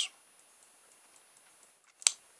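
Very quiet room tone with a few faint, light, irregular ticks.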